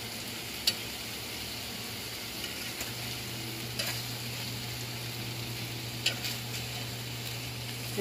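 Turkey burger sliders sizzling steadily on a stovetop grill pan as they are turned over, with a few sharp clicks of the utensil against the pan.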